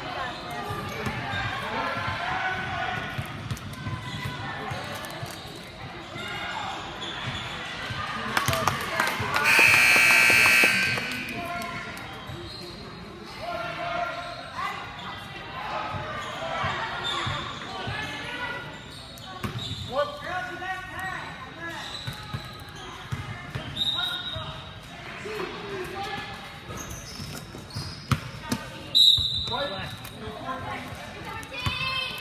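Basketball game in a gym: crowd and player voices with a ball bouncing on the hardwood, echoing in the hall. About ten seconds in, a scoreboard buzzer sounds for about a second and a half, the loudest sound here. Near the end come a few short, high squeaks as play resumes.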